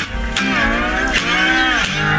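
Live rock band music: after a brief dip, a single held note bends up and down in pitch for about a second and a half while the bass drops out.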